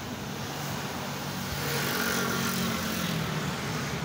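A motor vehicle passing close by, its engine and road noise swelling about two seconds in.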